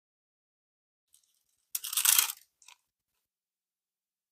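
A brief rustle and crinkle of paper being handled and pressed, about two seconds in, followed by a shorter rustle.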